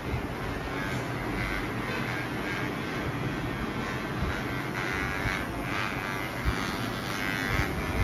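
Electric hair clipper running steadily as it trims hair at the nape of the neck.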